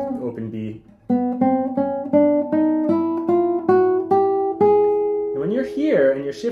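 Nylon-string classical guitar playing a slow chromatic scale: single plucked notes rising one semitone at a time, about three a second, after a brief pause about a second in. A man's voice comes in near the end.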